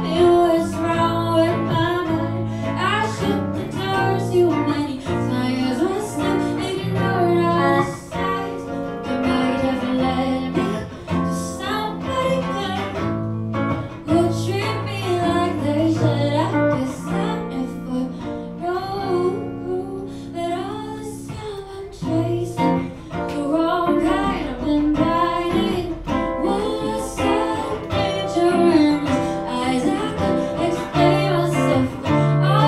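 A woman singing live into a microphone, accompanying herself on a baritone ukulele, heard through the room's PA speaker.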